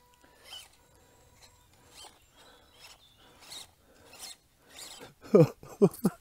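WPL B24 1/16-scale RC crawler clambering over dried mud ruts: faint, broken scrabbling and rasping from its tyres and drivetrain. Near the end a man gives two loud, short, falling vocal sounds as he starts to laugh.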